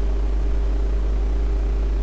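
Steady low electrical hum with a faint higher steady tone and light hiss in the recording, with no other sound in the pause.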